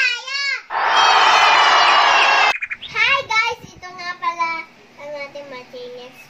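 Young girls' voices talking, interrupted about a second in by a loud burst of cheering that lasts nearly two seconds and cuts off suddenly.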